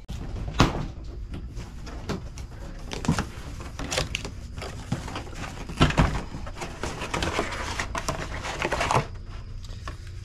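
Cardboard box being opened and unpacked: flaps and packing inserts rustling and scraping, with a few sharper knocks, the loudest about half a second in and about six seconds in. It quietens near the end.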